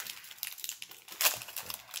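Foil wrapper of a Pokémon trading card booster pack being torn open and crinkling, a run of quick crackles with the loudest rip a little after a second in.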